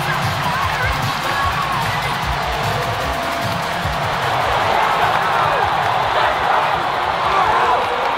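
Background music with a bass pulse laid under a large arena crowd cheering and shouting, the crowd swelling a little louder in the second half.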